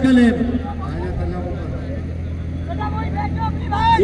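Faint voices of people talking around the ground over a steady low hum, after a man's voice trails off in the first moment.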